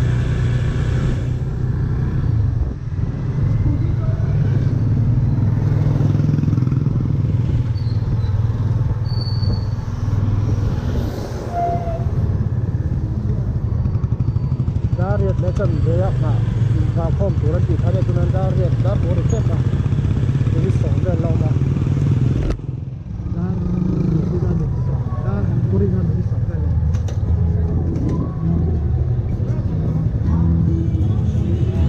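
A vehicle engine running steadily, with road noise, as the vehicle travels along a street. Several voices call out at once for a few seconds around the middle, over the engine.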